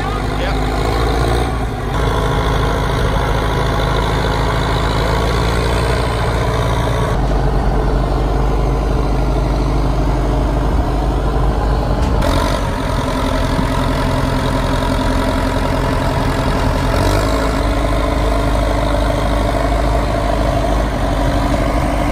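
Diesel engine of an old Caterpillar wheel loader running steadily while the machine sits stuck in deep mud. The steady drone shifts a little every few seconds.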